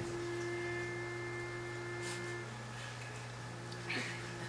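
A pitch pipe sounding the starting note for a barbershop quartet, one steady note that stops about two and a half seconds in. A low steady hum runs underneath.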